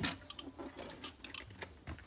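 Irregular light clicks and scuffs from someone moving among boulders and handling the camera, with one sharper click right at the start.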